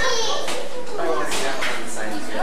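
Children talking and calling out over one another amid visitor chatter, several voices overlapping, with a high-pitched voice near the start.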